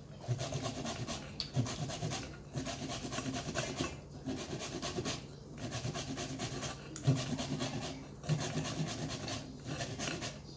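Zucchini grated on a handheld grater into a glass bowl: quick rasping strokes in runs, broken by short pauses about every one and a half seconds.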